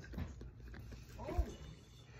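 A man humming "mmm" twice with a full mouth while chewing, a closed-mouth sound of enjoyment. A brief low thump comes about two-thirds of the way in.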